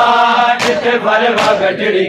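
Men's voices chanting a Punjabi noha in unison, with sharp rhythmic strikes of matam (hands beating on chests) keeping time about every three quarters of a second.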